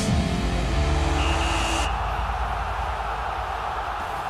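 Broadcast transition stinger for a TV sports-news programme: low music notes with a brief high tone for about two seconds, then a steady whooshing noise that carries to the end.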